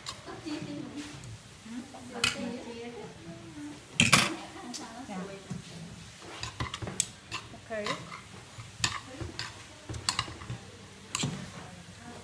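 Metal forks clinking and scraping against a ceramic bowl while tossing coleslaw, a run of irregular sharp clinks with the loudest about four seconds in.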